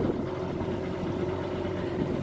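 Outboard motor idling steadily out of the water, run on a garden-hose water supply, with an even, unchanging hum.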